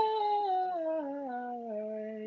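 A man singing a slow, connected descending run on a held vowel, stepping down note by note from a high pitch and settling on a lower held note near the end.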